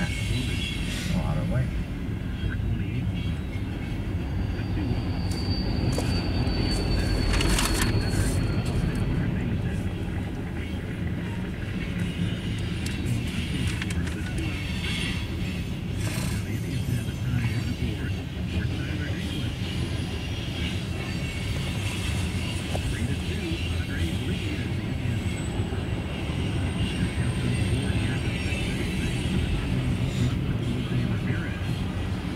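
A long freight train of flatcars, covered hoppers and tank cars rolling past close by, heard from inside a car: a steady low rumble of wheels on rails. A high squeal rises about five seconds in and lasts a few seconds, and a fainter high squeal comes near the end.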